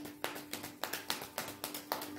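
A deck of tarot cards shuffled by hand: a quick, irregular run of soft slaps and flicks, about six a second, as the cards strike one another.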